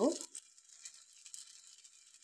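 Faint crackling sizzle of thin flour batter on a hot oiled tawa as a spoon spreads it, with a few small ticks.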